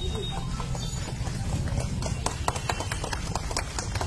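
Scattered hand clapping from a crowd, sparse at first and growing thicker from about two seconds in, over a low rumble and background voices.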